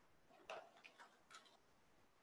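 Near silence with four faint, short clicks between about half a second and a second and a half in.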